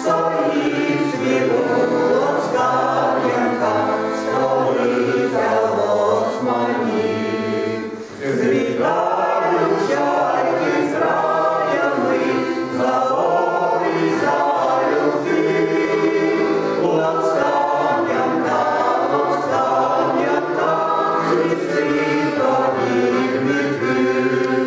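Ukrainian folk ensemble of men's and women's voices singing a song in harmony, with accordion accompaniment. The singing runs on continuously, with a short breath between phrases about eight seconds in.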